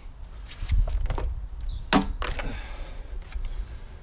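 Knocks and clunks of a petrol hedge cutter and a strimmer being handled and swapped. There are several sharp knocks, the loudest about two seconds in with a short ring after it, over a low rumble.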